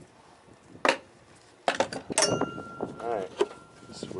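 Hand tools clinking and knocking against the metal of a riding lawn mower while a bolt is worked on: a single clink just under a second in, then a quick cluster of clanks about halfway through, followed by a faint thin tone that holds for a couple of seconds. A brief muttered voice comes in near the end.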